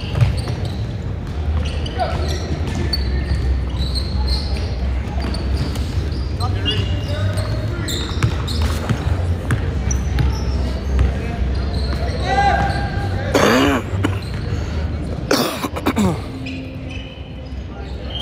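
Sports hall ambience: balls bouncing and being hit, scattered sharp knocks echoing in a large hall, over a steady low rumble. Distant voices and shouts rise about two-thirds of the way through.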